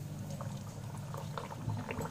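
A green-pea kachori just added to hot oil in a kadai, frying: the oil bubbles and sizzles steadily around it with many small crackles.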